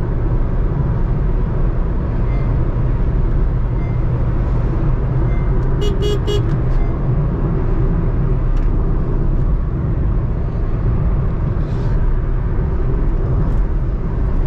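Steady low cabin rumble of a Honda City's 1.5-litre i-VTEC petrol engine and tyres cruising at highway speed. About six seconds in, a vehicle horn gives a quick run of three or four short toots.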